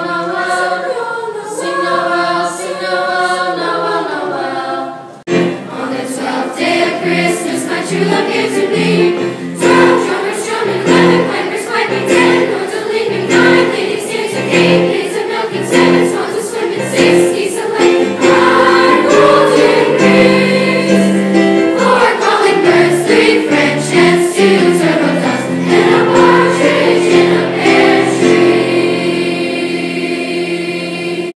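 Middle school chorus singing with keyboard accompaniment. About five seconds in, the sound cuts abruptly to a livelier song, the choir singing over a steady beat.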